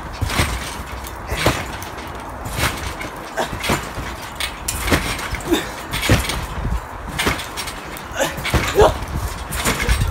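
Trampoline mat and springs thudding and creaking with each landing, in a steady bounce rhythm of about one landing a second as two people bounce and backflip in turn.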